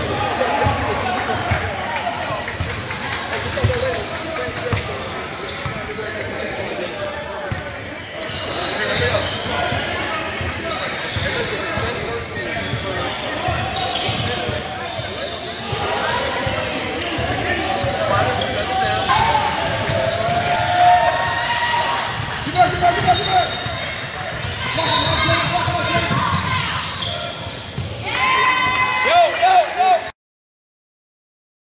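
Gymnasium ambience: basketballs bouncing on a hardwood court and indistinct voices of children and adults, echoing in a large hall.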